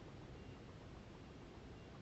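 Near silence: a faint, steady background hiss of dusk ambience.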